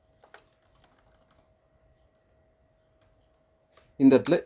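Faint computer keyboard keystrokes: a few quick taps in the first second and a half, a lone tap near the end, and near silence between. A faint steady hum runs underneath.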